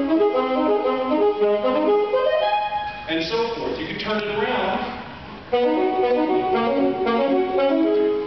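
Saxophone playing a quick run of short notes from a Bb minor etude, likely the passage reworked into an eighth-and-two-sixteenths rhythm. The playing drops away in the middle and comes back strongly about five and a half seconds in.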